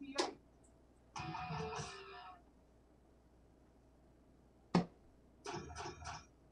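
Electronic soft-tip dartboard: a sharp click just after the start, then about a second of the machine's synthesized jingle. Near the five-second mark a dart strikes the board with a sharp click, followed by the board's short electronic scoring effect.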